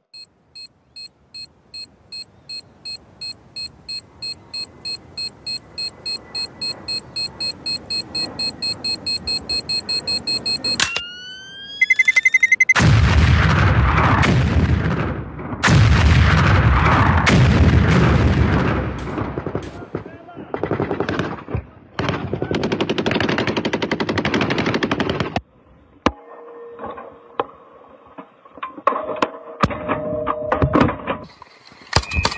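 Dramatic sound-effects sequence: electronic beeps that come faster and louder over about eleven seconds, a rising sweep, then loud gunfire and explosions of battle that go on for about twelve seconds before dying down.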